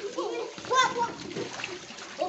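Water splashing in a paddling pool as small children play, with a garden hose running into it. A child's voice rises and falls in the first second.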